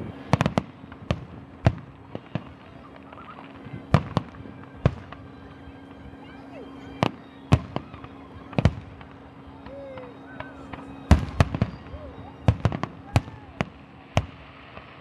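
Aerial fireworks bursting: sharp bangs at irregular intervals, some in quick doubles and triples, with a dense run of bangs about eleven to thirteen seconds in.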